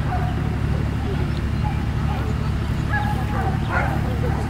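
A dog barking a few short times over a steady low rumble.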